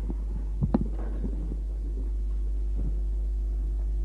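Steady low electrical hum on an old tape recording of a room, with a quick pair of sharp knocks under a second in and faint scattered room noise.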